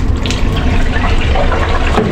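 Hot oil in a chip-shop deep fat fryer sizzling and bubbling as battered food goes in, over a steady low hum.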